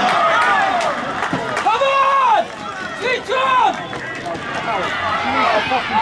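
Players and spectators at a football match shouting over one another, with a long drawn-out shout about two seconds in and another a second later. A man calls "stay, stay" right at the end.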